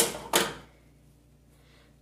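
Scissors snipping through a stiff plastic tie that holds a toy doll in its packaging: two sharp snips about a third of a second apart.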